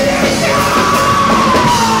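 Live rock band playing loudly, with a long yelled vocal note held high that slides down in pitch in the second half.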